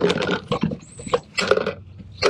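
Brush scrubbing the plastic housing of a Whale Mark V marine toilet pump in a bucket of water, in several irregular rough strokes.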